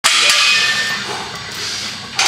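Heavy steel chains hanging from a loaded squat bar jangling and clanking as the lifter sinks into the squat, with a faint ringing metal tone. The sound starts abruptly and fades a little.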